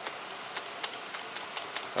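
Light ticking clicks, a few a second at uneven spacing, over a faint steady hiss of room noise.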